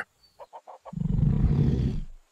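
A few short ticks, then about a second in a low creature growl, in the manner of a film dinosaur roar sound effect.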